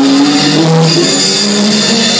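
Metal band playing live and loud: held electric guitar notes that change pitch a few times, with drums.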